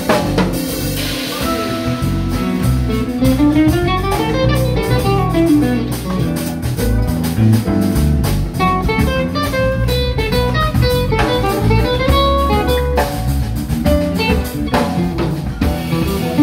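Live band playing with guitars, electric bass and drum kit, no vocals; a melodic line runs up and down over the rhythm section.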